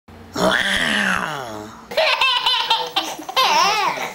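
Loud laughter: one long drawn-out laugh that rises and falls in pitch, followed by a quick run of short ha-ha bursts.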